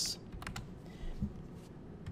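Computer keyboard typing: a handful of separate keystrokes as a file name is entered, most of them in the first half second, with one or two more later.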